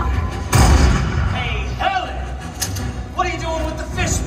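A voice over the arena's loudspeakers with music beneath it, and one loud thud about half a second in.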